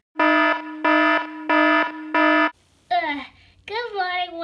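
Alarm clock beeping four times in a steady, buzzy tone, then stopping. About three seconds in, a high voice starts singing with gliding pitch.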